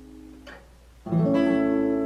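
Acoustic guitar chords: one chord rings and fades, then a new chord is strummed just after a second in and rings on.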